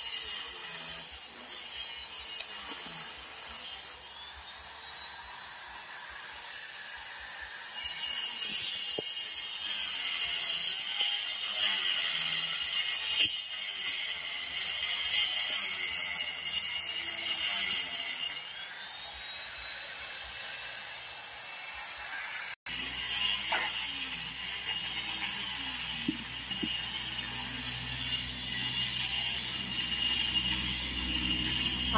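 Handheld electric grinder cutting tile. Its motor spins up with a rising whine about four seconds in and again about eighteen seconds in, then runs steadily.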